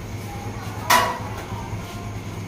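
A single short, sharp knock about a second in, over a steady low hum.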